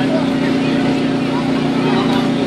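Steady electric air blower keeping an inflatable bounce house inflated, running with a constant hum.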